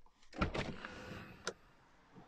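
A short electric motor whir in the car's cabin as the BMW is switched off, starting with a thud and ending in a sharp click.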